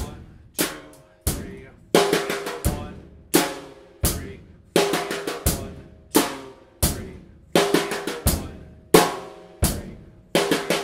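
Drum kit playing a basic 4/4 rock beat: bass drum and snare drum alternating, with the closed hi-hat struck on every beat, at a slow, steady tempo of about four hits every 2.7 seconds. On beat four of each measure a quick run of four sixteenth notes on the snare fills in, three times.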